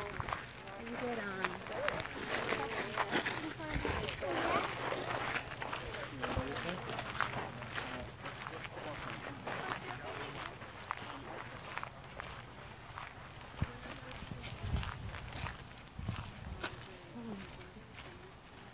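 Indistinct voices of people talking, with footsteps on a path.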